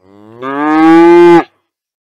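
A Holstein dairy cow mooing: one long moo that rises in pitch at the start, grows loud, and breaks off sharply after about a second and a half.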